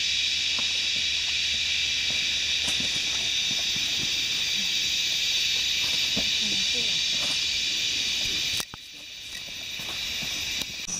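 Loud, steady high-pitched drone of a cicada chorus, which cuts off abruptly near the end, leaving much quieter forest sound.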